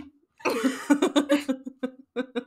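A woman laughing in short, rapid bursts, starting about half a second in.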